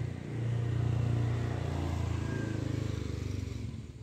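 A motor vehicle's engine passing close by: a low, steady engine note that swells just after the start and fades away near the end.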